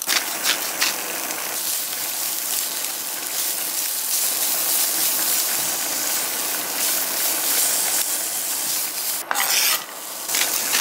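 Julienned carrots dropped into hot oil in a nonstick pan, sizzling steadily as a spatula stirs them. The sizzle starts suddenly, with a few sharp clicks as the carrots land, and near the end there is a brief louder burst.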